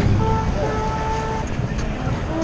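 Street traffic rumble at a city intersection, with a held pitched note, horn-like, sounding for about a second and a half from just after the start.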